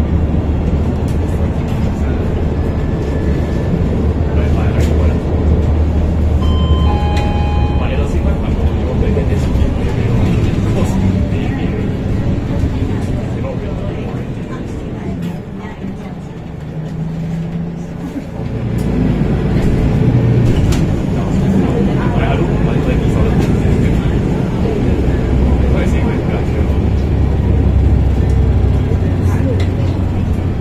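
Inside a MAN NL323F city bus under way: the low rumble of its MAN D2066 straight-six diesel and the road noise, under constant passenger chatter. A short electronic chime, the stop-request signal, sounds about seven seconds in. The rumble eases to its quietest around the middle as the bus slows, then builds again as the engine pulls away.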